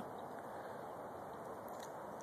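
Quiet outdoor background: a faint, steady hiss with no distinct sounds.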